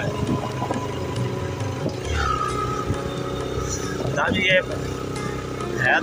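Yamaha motorcycle engine running steadily under way, with wind rumble on the microphone and a brief snatch of voice about four seconds in.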